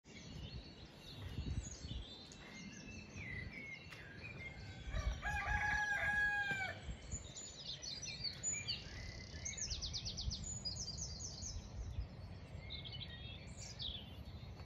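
Dawn chorus of many songbirds chirping and trilling. About five seconds in comes one louder, longer call held on a steady pitch for about a second and a half.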